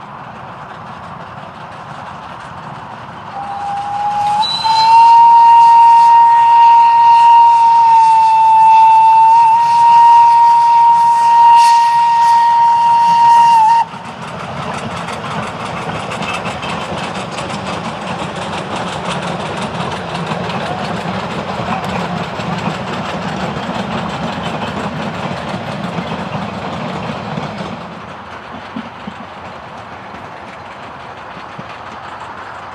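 Steam locomotive whistle sounding one long blast of about ten seconds, rising briefly in pitch as it opens, then cutting off sharply. After it the train runs past with a steady rolling rumble of the coaches on the rails, which fades away near the end.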